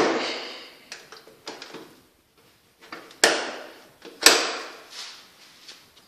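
A window sash and its latch being worked by hand: a few light clicks, then two sharp knocks about a second apart, each ringing briefly, and a fainter click near the end.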